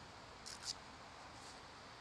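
Two short, faint rustling scuffs about half a second in, and a softer one later, from the rider handling a motorcycle glove, over a quiet steady hiss; the motorcycle's engine is not running.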